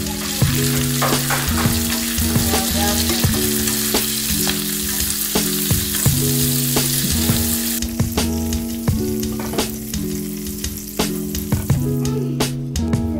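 Thai basil leaves sizzling in hot oil as they are stir-fried in a pan. The sizzle cuts off about eight seconds in.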